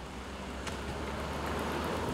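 Citroen Berlingo MPV driving toward the camera on a wet road, its tyre hiss and engine noise growing steadily louder as it comes nearer.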